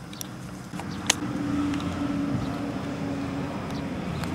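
An engine running steadily with a low hum that grows louder about a second in, with a single sharp click around the same point.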